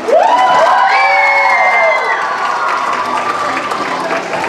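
Audience bursting into cheering and applause: several high-pitched shouts rise and are held for about two seconds over steady clapping, which carries on after the shouts fade.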